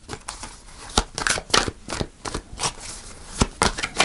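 A deck of tarot cards being shuffled by hand: a run of irregular card snaps and slaps, with sharper clicks about one second in and again near the end.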